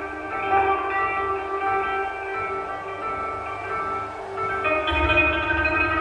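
Long zither with movable bridges, koto-type, being plucked: several overlapping notes ring and sustain into one another. About five seconds in a new cluster of notes is struck, with a low rumble swelling beneath it.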